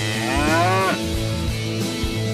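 A single cow's moo, rising in pitch for about half a second and ending just before the second mark, over background music.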